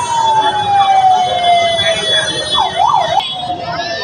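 A siren winding down in one long, smoothly falling tone over the chatter of a large crowd. A high buzzing tone sounds alongside it and cuts off about three seconds in.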